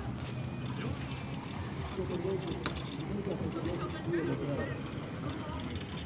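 Moored passenger boat's engine running as a low steady rumble, with indistinct voices of people talking nearby in the middle.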